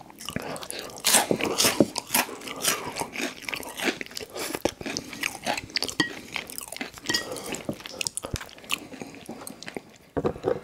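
Close-miked chewing with many sharp crunches in quick succession, as a sauce-coated Hot Cheeto is bitten and chewed.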